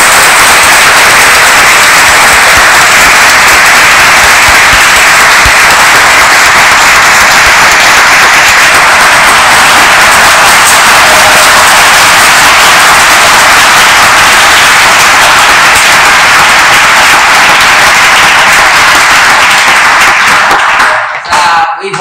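Audience applauding, loud and sustained, dying away near the end.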